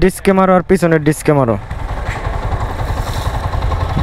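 A freshly serviced Yamaha R15's single-cylinder engine idling steadily, heard plainly once a voice stops about a second and a half in.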